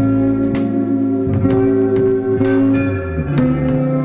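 Live band playing an instrumental passage: electric guitar notes ringing over a low bass line, with sharp drum hits about once a second.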